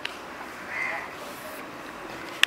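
A bird calling once, faintly, about a second in, over a steady background hiss.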